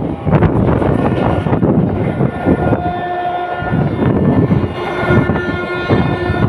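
Running noise of a moving passenger train heard from an open coach doorway: a loud steady rumble of wheels on the rails with repeated clicks and clatter, and a few thin steady tones over it.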